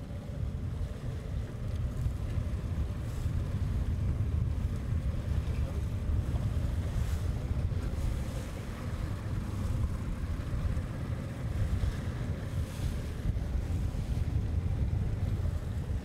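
Wind buffeting the microphone over the steady low rumble of a boat running at trolling speed, with the wash of its wake.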